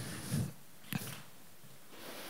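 A pause in speech through a handheld microphone: quiet hall room tone, with a brief low vocal sound from the speaker near the start and a single soft click about a second in.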